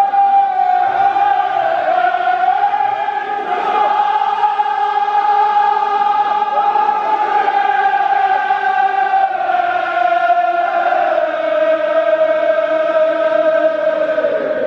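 A group of men chanting a Kashmiri marsiya (elegy) in unison, drawing out one long held note with no break; the pitch sinks a little over the last few seconds.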